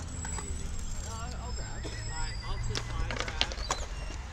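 Young voices talking and calling out indistinctly at a distance, over a low rumble, with a few sharp clacks about three seconds in.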